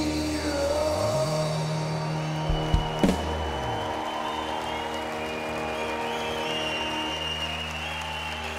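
Live rock band closing a song on a long held chord, with a few drum and cymbal hits about three seconds in. The chord rings on while the crowd starts to applaud.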